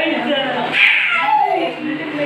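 A toddler's high-pitched happy vocalizing, squealing and babbling, loudest just under a second in.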